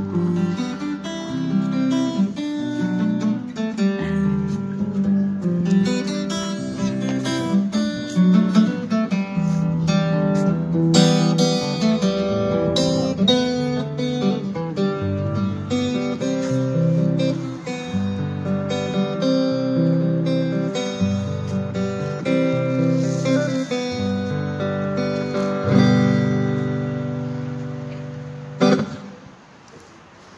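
Taylor 712 steel-string acoustic guitar played through an acoustic amplifier, picking a melody over a moving bass line and ending on a final struck chord shortly before the end.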